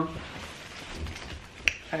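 Quiet handling and movement sounds, then a single sharp click near the end, just before she speaks.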